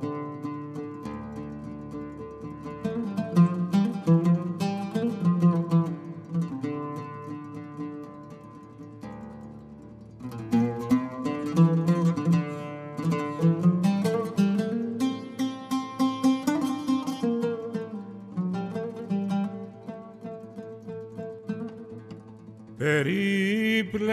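Solo oud playing a single melodic line of plucked notes. Quicker runs come a few seconds in and again in the middle, with a softer lull around eight to ten seconds in.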